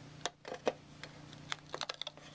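Small screwdriver prying at the glued plastic hub cover on the outside of a DVD drive, making a series of light, irregular clicks as it works under the edge to break the glue.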